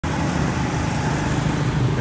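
Steady low motor-vehicle engine hum.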